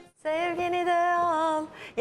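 Live concert music cuts off abruptly, and after a moment a woman's voice holds one long sung note, without accompaniment, for about a second and a half.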